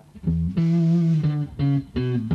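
Amplified electric guitar and bass guitar playing a short run of four or five sustained notes, one held longer in the middle, as a sound check for the studio's levels.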